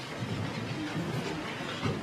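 A roomful of people shifting and settling in their chairs: a low, irregular rumble of chairs and feet moving, with some rustling.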